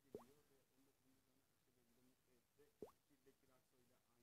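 Two faint, short plops that rise quickly in pitch, about two and a half seconds apart, over near silence.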